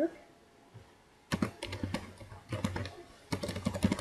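Typing on a computer keyboard: quick runs of keystrokes in three short bursts, starting about a second in.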